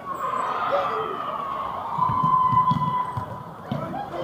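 A sports hall buzzer holds one long, steady tone for about three and a half seconds, dipping slightly in pitch at the start. Thuds of play on the court sound underneath.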